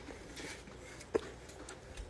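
A person chewing a cracker: a few faint crunches and one sharp click about a second in.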